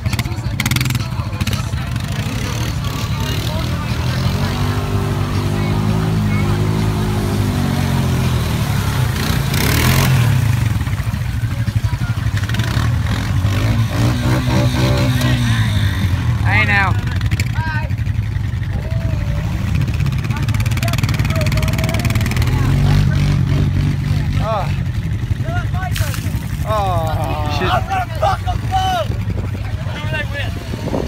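ATV engine running in the river, mostly at a steady idle and revved up and down twice, around the fourth to eighth second and again around the fourteenth.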